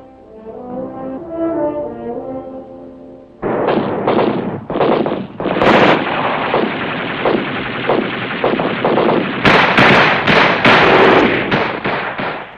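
Brass-led orchestral music for about three seconds. It gives way suddenly to dense gunfire: rapid crackling small-arms and machine-gun fire, with the loudest shots a little after the middle.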